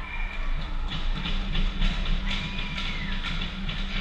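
Ice hockey goal celebration at a rink: a loud, steady low horn-like drone with music, starting just as the puck goes in. Short clicks and clatter of sticks and skates on the ice run over it.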